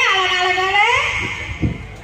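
A long wailing vocal cry that rises and then falls in pitch over about a second, followed by a single dull knock about a second and a half in.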